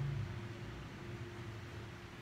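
Steady low hum with a faint steady tone above it: the background noise of the room, with no clear event.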